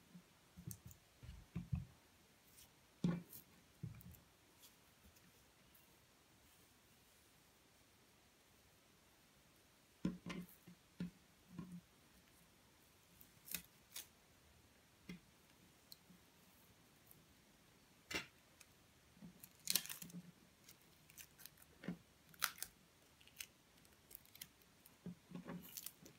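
Faint rustles of jute twine being looped and knotted on a tabletop, with scattered light clicks and snips of scissors now and then.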